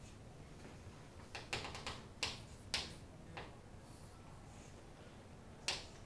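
Chalk tapping and scratching on a chalkboard as lines and letters are drawn: a run of sharp, short taps between about one and three and a half seconds in, and one more near the end.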